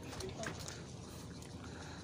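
Faint outdoor background noise between remarks, with a few soft clicks in the first second.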